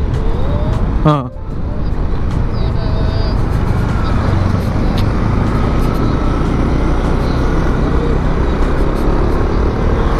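Yamaha Aerox 155 VVA scooter's single-cylinder engine running steadily at cruising speed, with a rush of wind over the microphone.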